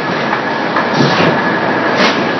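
An in-line extrusion and thermoforming line for polypropylene flower pots running: a loud, steady mechanical noise with a faint hum, and a sharp clack about once a second.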